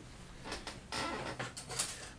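Light rustling and small clicks of plastic model-kit sprues being handled.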